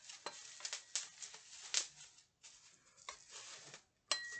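Plastic packaging and bubble wrap rustling and crinkling in the hands, in short scattered crackles; the sharpest crackle comes a little before the halfway point.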